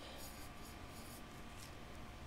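Faint, soft scratching of a thin paintbrush stroking alcohol ink over a tumbler, a few light strokes over low room hiss.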